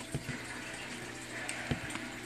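A low, steady hiss with a few soft knocks, the clearest near the end.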